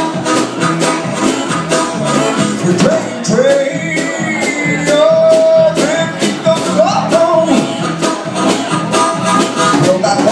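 Live music: a harmonica cupped against the vocal microphone plays long, bending held notes over electric guitar and a steady beat.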